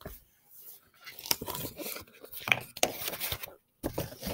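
Paper rustling and crinkling as the pages of a large picture book are turned and the book is handled, for a couple of seconds in the middle.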